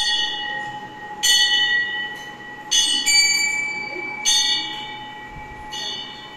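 Metal temple bell struck about every second and a half, four strikes plus the ring of one just before, each ringing on and slowly fading.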